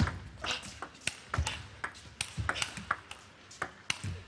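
Table tennis rally: the plastic ball clicking sharply off the rackets and bouncing on the table, in a quick, uneven run of about a dozen hits.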